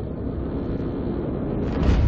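Trailer sound design: a steady low rumble, with a noisy whoosh swelling up near the end.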